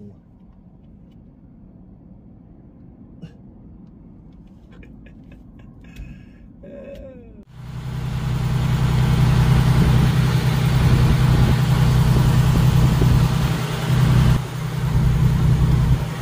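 Heavy truck's Detroit DD15 diesel engine, heard inside the cab. It starts running loudly about halfway through, abruptly, with a steady low drone, and before that there is only a faint low rumble with a few small clicks.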